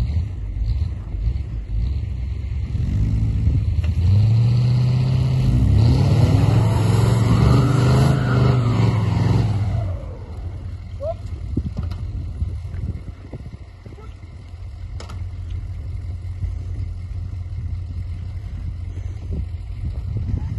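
Vehicle engine revving hard under load for several seconds as it pulls a stuck truck out of snow on a tow strap, rising and falling in pitch. It drops back about ten seconds in.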